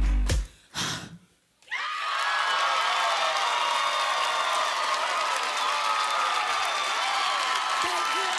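A live band's deep bass note stops abruptly about half a second in, followed by one short hit and a moment of near silence. Then, from about two seconds in, an audience cheers and screams loudly, with many high whoops over the roar.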